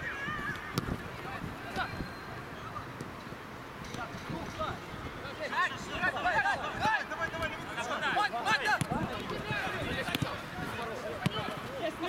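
Footballers shouting short calls to one another across the pitch, several male voices overlapping, busiest from about five to nine seconds in, with a sharp knock near the end.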